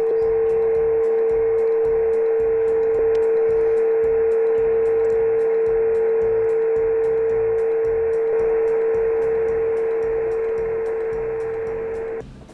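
A steady single tone from an interfering carrier on 160 meters, heard as a heterodyne whistle through a ham radio receiver over band hiss. The level sags a little over the last few seconds as the receive loop is rotated to null the signal.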